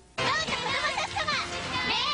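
High-pitched children's voices calling out excitedly over bright music, in the manner of a TV commercial, starting a fraction of a second in after a near-silent gap.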